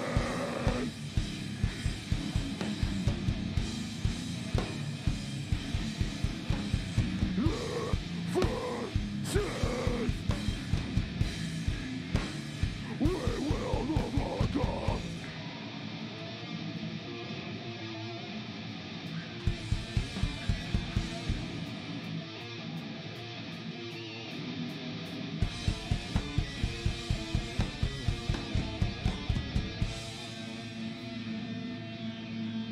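Live hardcore punk band playing loud: fast pounding drums with distorted guitar and shouted vocals. About halfway the drums and bass drop out, leaving a thinner guitar part, then the drums come back in short bursts near the end.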